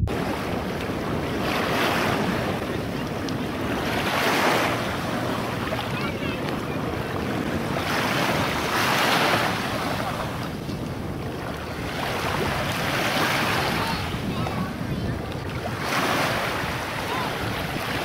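Shallow sea water washing in small waves, with a surge about every four seconds, and wind buffeting the microphone.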